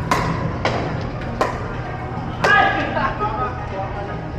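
Pickleball paddles hitting a plastic ball in a rally: four sharp pops about half a second to a second apart. The last, about two and a half seconds in, is followed by a short shout.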